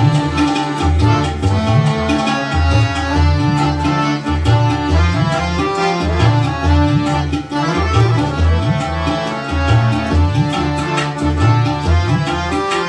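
Korg arranger keyboard playing a Middle Eastern-style accompaniment: a tabla drum rhythm with an accordion-like melody line over it.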